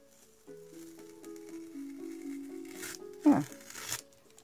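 Soft background music of slow, sustained low notes, with a short faint rasp of Scotch Magic Tape peeling off watercolor paper just before three seconds in.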